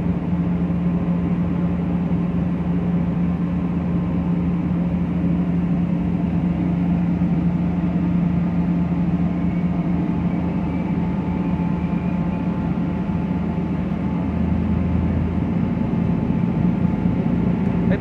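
Steady, unbroken low drone of a RO-RO ferry's onboard engines and machinery, heard from aboard the ship, with a constant deep hum.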